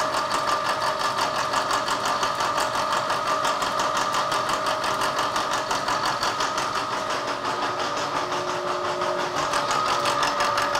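Vertical milling machine's cutter taking a light face cut across a steel steering arm: a steady machine whine with a fast, even pulsing from the cut.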